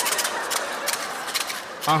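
Studio audience laughing, with scattered clapping heard as a patter of quick clicks. It tails off just before speech resumes near the end.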